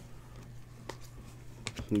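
Trading cards being flipped through by hand: a few light, sharp clicks as the card edges slide and snap against each other, over a low steady hum.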